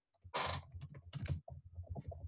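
Typing on a computer keyboard: an uneven run of quick keystrokes as a short phrase is typed.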